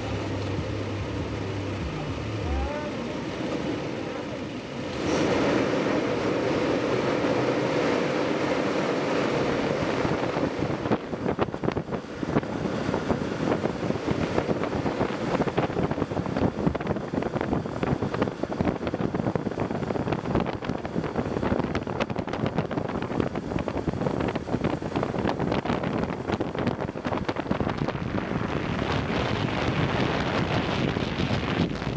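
A short low hum under an animated logo. Then, from about five seconds in, steady wind rushing and buffeting on the microphone with the rolling roar of longboard wheels on asphalt during a fast downhill run. The buffeting grows rougher from about eleven seconds in.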